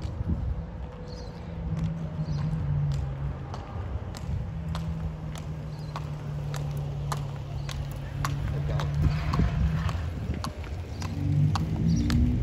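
Hooves of a walking Thoroughbred horse striking asphalt in an even clip-clop of sharp hoofbeats, about two a second, over a steady low hum.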